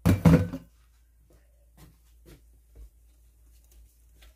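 A loud clunk of kitchenware set down on the countertop right at the start, followed by a few faint small knocks.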